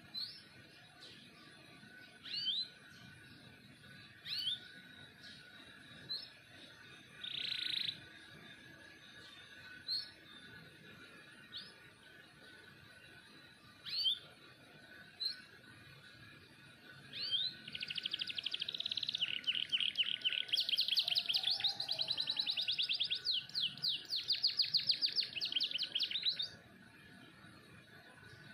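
A domestic canary calling with short, high single chirps every couple of seconds, then breaking into a long, rapid trilling song that lasts about nine seconds in the second half.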